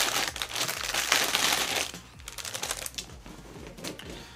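Clear plastic polybag crinkling and crackling as a plastic model-kit runner is pulled out of it. The crinkling is loudest in the first two seconds, then fainter handling crackles follow.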